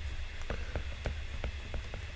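Light, quick ticks of a stylus tapping and sliding on a tablet's glass screen while words are handwritten, about four or five taps a second.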